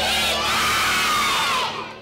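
A large group of schoolchildren cheering and shouting together, fading out near the end.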